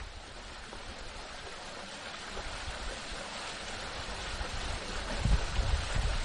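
Steady rushing outdoor noise, like surf or wind, fading in and slowly growing louder, with a few low rumbles near the end.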